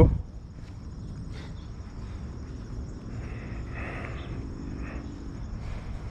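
Outdoor ambience: insects chirring steadily at a high, even pitch over a low rumbling background.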